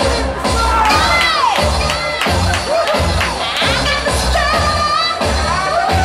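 Dance music with a steady bass beat, with a nightclub crowd cheering and screaming over it.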